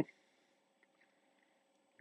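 Very quiet: only a faint steady hum.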